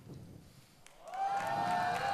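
The song's last notes die away into a brief quiet pause; about a second in, a studio audience starts cheering and clapping.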